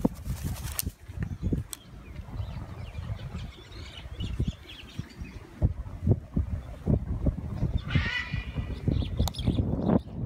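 A blue-and-gold macaw's wings flapping as it comes in to land, over a low wind rumble on the microphone. A short, harsh squawk with a buzzy ring comes about eight seconds in, and faint small-bird chirps sit in the background.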